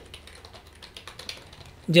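Typing on a computer keyboard: a quick, faint run of keystrokes as one word is typed.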